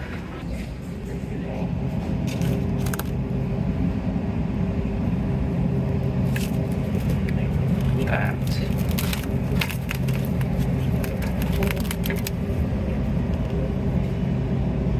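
Grocery store ambience: a steady low rumble and hum, with scattered clicks and rattles from a shopping cart being pushed and meat packages being handled.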